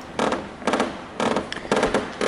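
Glass-fibre tailplane of a Libelle glider creaking in short bursts, about two a second, in time with the top of the fin being pushed back and forth by hand.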